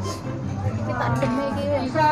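A person's voice, without clear words, over background music with a steady low beat.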